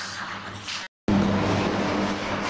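Whiteboard duster rubbing across a whiteboard, erasing the writing: a steady scrubbing noise that cuts out for an instant about a second in, then comes back louder.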